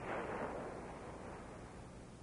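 A single dull bang at the start that dies away over about a second, over the steady hiss of an old film soundtrack.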